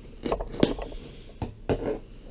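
Scissors snipping through the sticker seal on a cardboard box: a few sharp snips and clicks, the loudest a little over half a second in.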